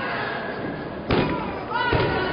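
A boxing glove punch landing with a sharp thump about a second in, and another thump near the end, over crowd voices and shouts.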